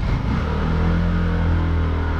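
Small motor scooter's engine running steadily as it pulls away, a steady drone that comes in sharply at the start.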